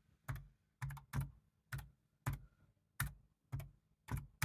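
Keys of a Raspberry Pi 400's built-in keyboard pressed one at a time: about eight slow, separate keystrokes with short gaps between them.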